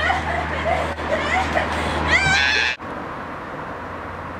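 Girls' voices calling out excitedly, with a high rising squeal a little over two seconds in. The sound then cuts off abruptly to a quieter background, and a steady low rumble lies under the first part.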